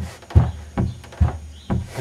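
Warped fiberglass headliner of a factory hardtop flexing under a pushing hand, giving about five short pops and knocks as the dented panel springs back into place.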